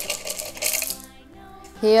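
Plastic number pieces clattering as they are tipped out of a plastic jar onto an artificial-grass mat. It is a rattle of many small clicks for about a second, then it stops.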